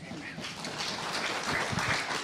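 Congregation applauding, building up over the two seconds, with some voices mixed in.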